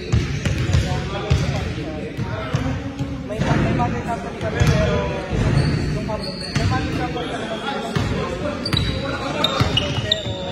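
Basketball bouncing on a hardwood gym floor, with sneakers squeaking briefly a few times and players calling out, echoing in the large hall.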